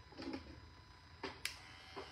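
Faint room tone with a few soft clicks and knocks, about four in all, as a small handheld electric clipper is handled.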